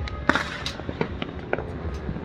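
Fireworks banging and popping: one sharp bang just after the start, then a scatter of smaller pops and cracks.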